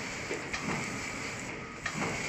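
Four-side-sealing horizontal pillow packing machine running: a steady mechanical hum and hiss with a short sharp clack about once every second and a quarter. In this stretch one clack comes about half a second in and a stronger one near the end.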